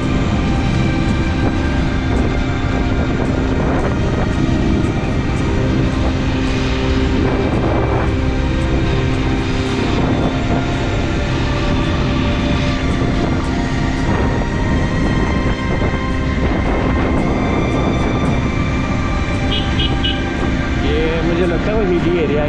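Motorcycle engine running at a steady road speed, its pitch shifting a couple of times, under heavy wind rush on the camera microphone.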